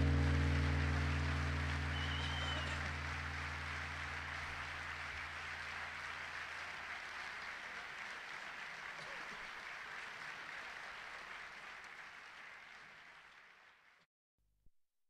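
Audience applause as an Indian classical instrumental piece ends, with the low tones of its closing note ringing and dying away over the first few seconds. The applause fades gradually and cuts off shortly before the end.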